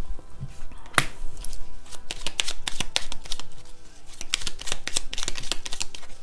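A tarot deck being shuffled by hand: a quick, irregular run of card clicks and flicks.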